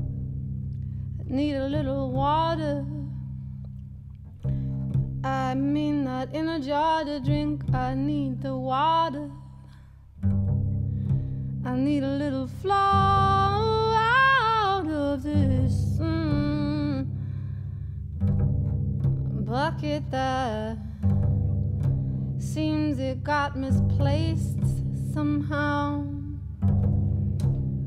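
Upright double bass played pizzicato, low notes held under a woman's singing. Her voice comes in several phrases with a wavering vibrato, with gaps where only the bass sounds.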